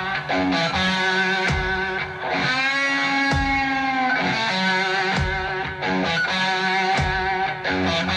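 Live rock band playing a slow blues, led by a Stratocaster electric guitar playing a lead line. About two and a half seconds in, a long bent note is held with vibrato for over a second. Slow drum beats fall about every two seconds beneath it.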